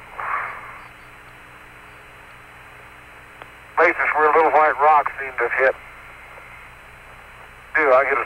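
Apollo air-to-ground radio channel: a steady, narrow-band hiss with a low hum under it. About halfway through, a man's voice comes over the radio for two seconds.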